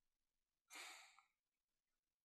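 Near silence, broken by a man's single short, faint sigh a little under a second in.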